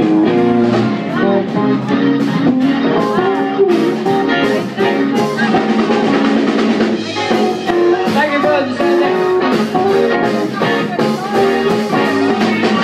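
A band playing music: guitar over a drum kit, with drum strokes throughout.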